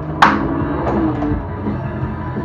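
Pinball machine playing rock-style game music through its PinSound board and upgraded stereo speakers. About a quarter-second in there is one sharp, loud crash that fades quickly, with a few lighter clicks later on.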